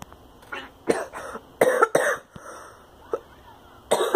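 A young man coughing several times in a short fit, the coughs bunched in the first half, with one small cough near the end.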